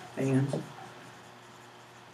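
Dry-erase marker writing on a whiteboard, a faint scratching and squeaking, with a short spoken syllable about a quarter second in.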